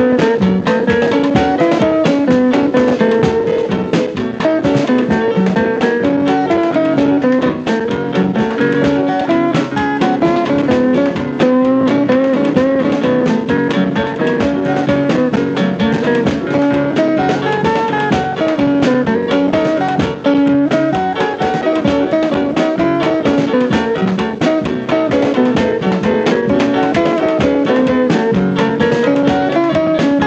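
Instrumental break of a Louisiana rhythm-and-blues record: a guitar lead over a steady drum-kit beat, with no singing.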